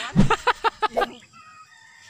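A man laughing: a quick run of about six or seven short "ha" sounds lasting about a second, then dying away.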